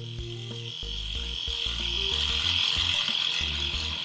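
Electric toothbrush running with a steady high buzz that grows gradually louder. Soft background music with a stepping bass line plays underneath.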